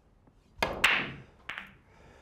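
Pool break shot: the cue tip strikes the cue ball, and a moment later the cue ball cracks into the racked balls, the loudest clack. A further clack follows about half a second later as the balls scatter.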